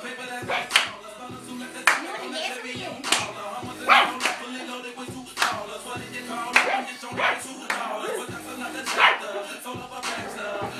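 Music playing, with a dog barking about every second over it.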